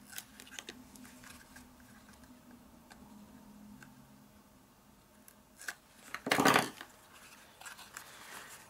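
Hands handling and folding thin card stock, with faint rustles and small clicks, then a short, sharp paper rasp about six and a half seconds in.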